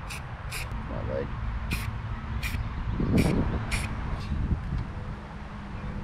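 Short hisses from an aerosol can of marking paint, sprayed in about six quick bursts spread over the first four seconds, with a low wind rumble underneath.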